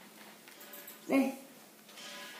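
A single short spoken word, "đây" ("here"), about a second in; otherwise a quiet room.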